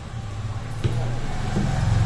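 A low steady motor hum that grows louder over the two seconds, with one sharp tap just under a second in.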